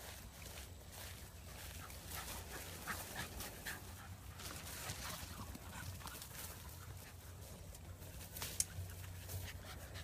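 A puppy panting and moving about, faint, over a steady low rumble, with one sharp click shortly before the end.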